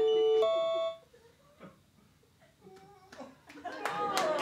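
Electric keyboard holding its last notes of a passage, which cut off about a second in. After a short hush, scattered audience clapping starts near the end.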